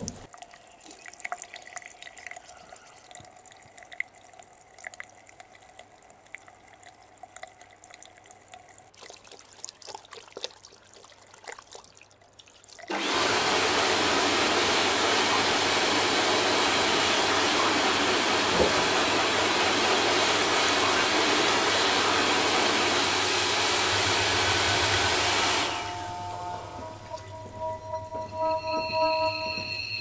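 A loud, steady rushing noise of water or air starts suddenly about halfway through and cuts off shortly before the end. Before it there are only faint clicks and a low hum, and soft music tones come in near the end.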